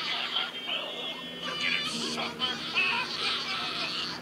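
Cartoon characters laughing hard and continuously in high, warbling voices.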